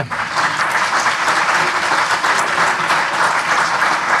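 Audience applause: many hands clapping, starting suddenly and holding steady.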